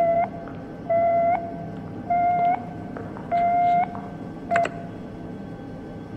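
Electronic beeping signal: four evenly spaced beeps a little over a second apart, each about half a second long with a slight rise in pitch at its end, then a short fifth beep with a click about four and a half seconds in.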